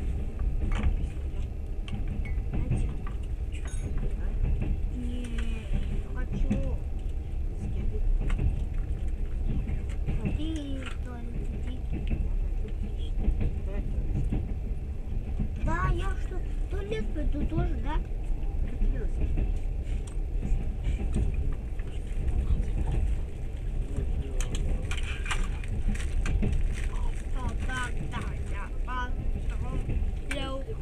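Steady low rumble of a passenger train running along the track, heard from inside the carriage, with voices talking now and then.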